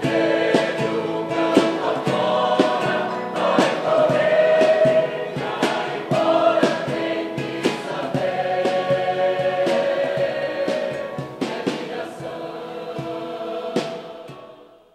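Mixed choir singing with electronic keyboard accompaniment and a steady beat of about two strokes a second.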